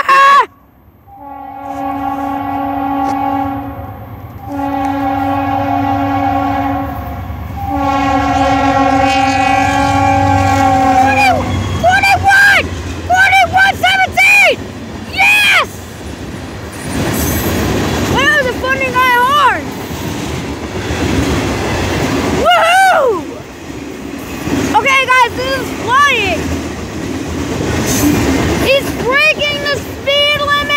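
Freight locomotive air horn with an odd, funny-sounding chord, blowing three long blasts. The train then passes over the crossing, its cars rumbling with repeated short wheel screeches that rise and fall.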